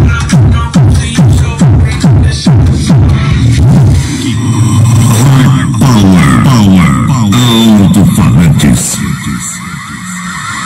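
Electronic dance music played very loud through a Soundigital SD8000-powered rig of four Hard Power woofers and horn drivers: rapid bass kicks that drop in pitch. From about four seconds in, gliding synth sweeps take over, and the level falls off near the end.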